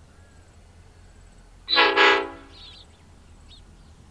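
Diesel locomotive horn, from lead unit BL32, sounding two short blasts in quick succession as the grain train departs. Faint bird chirps follow.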